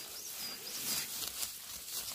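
A small songbird gives a few thin, high-pitched chirping notes in the first half, over soft rustling of dry grass.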